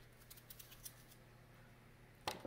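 Faint short clicks of a paring knife cutting through small potatoes held in the hand, several of them mostly in the first second, over near silence.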